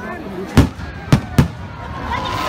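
Aerial firework shells bursting overhead: three sharp bangs, the last two close together.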